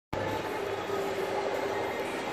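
Steady background hum of a shopping mall interior: a constant even noise with faint steady tones and no distinct events.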